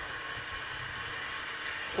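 A steady hiss of background noise in a pause between spoken phrases, with no distinct event.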